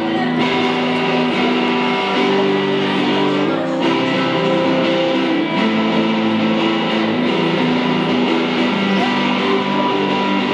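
Electric guitar played live through an amplifier, picking a slow, sustained chord pattern as a song's instrumental intro.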